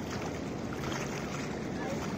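Steady wash of choppy water at a concrete shoreline, an even rushing noise with no distinct splashes.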